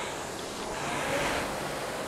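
Concept2 RowErg air-resistance flywheel whooshing through one rowing stroke at 20 strokes a minute. The rush swells a little about a second in as the drive spins the fan up, then eases.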